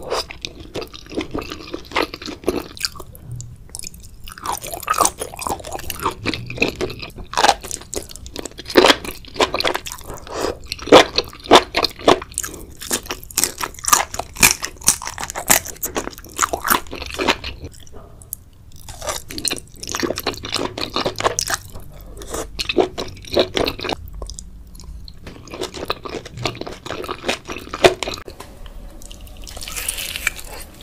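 Close-miked chewing of sauced seafood: wet, sticky mouth sounds packed with sharp crackling clicks. It goes in bursts, with a few short lulls between bites.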